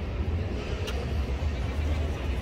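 Outdoor street noise with a steady low rumble, like road traffic, and a short faint click about halfway through.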